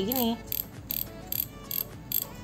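Daiwa Saltiga 5000-XH spinning reel worked by hand, its mechanism ticking evenly about four times a second; not very loud.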